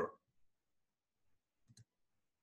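Near silence, with a single short, faint click near the end.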